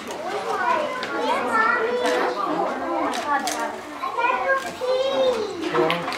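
Several people talking and exclaiming at once, their voices overlapping, some of them high-pitched.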